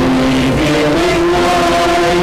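A small vocal ensemble singing a hymn with instrumental accompaniment, in held notes that move from pitch to pitch.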